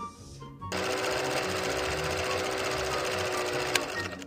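Old film projector clattering steadily as a countdown-leader sound effect, with a low steady hum under the rattle. It starts a little under a second in and cuts off with a sharp click just before the end.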